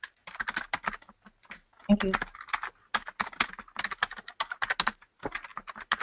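Typing on a computer keyboard: a run of rapid, irregular key clicks picked up by a webinar participant's microphone.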